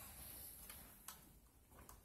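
Near silence with two faint clicks, one about a second in and one near the end: multimeter probe tips being moved onto the bolted copper bus bars of Nissan Leaf battery modules to take cell voltages.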